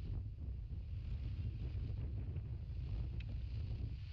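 Wind buffeting an outdoor camera microphone: a steady low rumble that rises and falls in strength, with a faint tick near the end.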